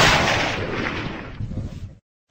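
A single loud blast, an explosion-style sound effect in the edited soundtrack, that dies away in a noisy rumbling tail over about two seconds and then cuts off abruptly.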